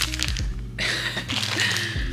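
Crinkling of a thin clear plastic bag around a small toy as it is handled and pulled at to be opened, with a rustling burst in the second half.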